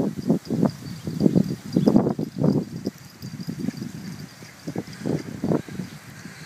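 A warthog and small Yorkshire terriers at play, making a run of short, low grunting sounds and scuffles several times a second that thin out near the end.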